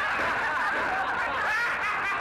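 Several voices laughing and yelling at once in a continuous clamour.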